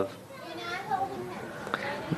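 Faint voices in the background, with a soft click near the end.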